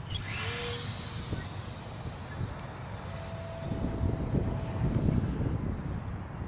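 Electric motor and propeller of a small RC sailplane spinning up at hand launch: a quick rising sweep into a steady high whine that fades away after about two seconds as the plane climbs. Then a low rumble of wind on the microphone.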